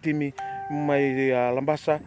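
A short chime tone starts abruptly about half a second in and fades within about half a second, over a man's drawn-out speaking voice.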